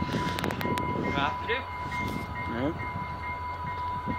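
Diesel locomotive idling close by: a steady low rumble under a constant high tone, with a few sharp clicks in the first second and faint voices.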